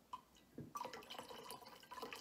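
Whiskey poured from a glass bottle into a glass: faint and uneven, starting about half a second in.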